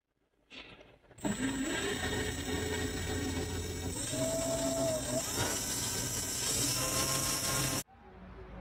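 Small power tool motor running steadily with a whining, drill-like sound, its shaft pressed against an Apple Watch's digital crown to spin it; the pitch shifts a few times, and the sound cuts off suddenly just before the end.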